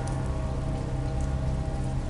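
Steady rain-like hiss over a low, sustained drone: an ambient sound bed with a few faint ticks like drops.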